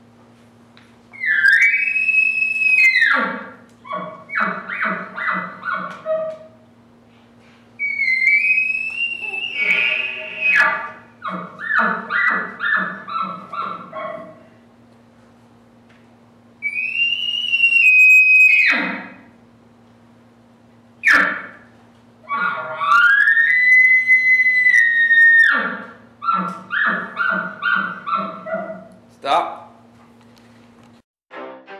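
Bull elk calls made by a person with a reed call and grunt tube: four bugles, each a high whistle held for about two seconds that rises in and drops away at the end. Three of them are followed by a quick run of grunting chuckles.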